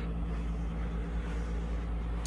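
Steady low machine hum: a deep, even rumble with a few constant tones over it, unchanging throughout.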